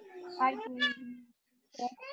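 Speech only: a drawn-out, sing-song spoken greeting "Hi" heard through video-call audio.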